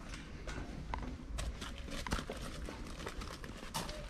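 Footsteps going down an open steel grating staircase: shoes knocking and clanking irregularly on the metal treads.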